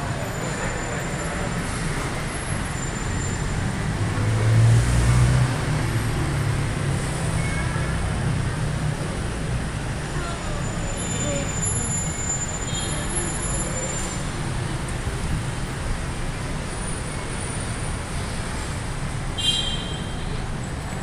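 Busy city road traffic: a steady mix of cars, buses and motorcycles, with a louder low rumble from a heavy vehicle passing about five seconds in.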